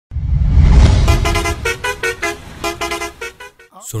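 A vehicle engine's low rumble, loudest about a second in, under a quick run of short horn toots that change pitch like a tune, about three a second.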